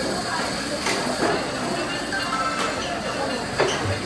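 Short music jingle from a conveyor-belt sushi table's tablet as it plays its plate-return prize-game animation, over diners' chatter, with a few light clicks.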